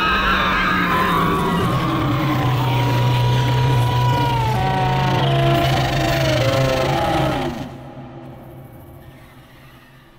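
The dragon Meleys roaring, a film sound effect: one long, loud roar with a steady low rumble and higher tones that slide down in pitch near its end. It dies away with reverberation from about three-quarters of the way in.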